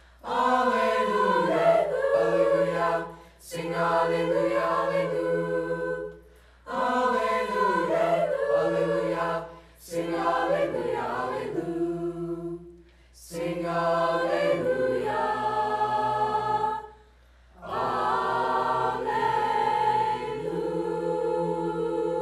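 Mixed-voice school choir singing, in phrases a few seconds long with short breaks for breath between them.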